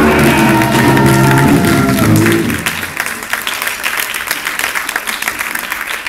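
A rock band's electric guitar and bass ringing out on a final held chord, which dies away about halfway through. Audience applause then follows.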